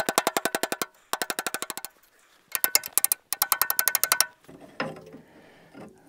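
Ratchet wrench clicking in four quick runs of rapid, ringing metallic ticks as its handle is swung back and forth on the backhoe's boom cylinder pin.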